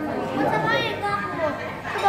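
Indistinct overlapping chatter of several people talking in a large room.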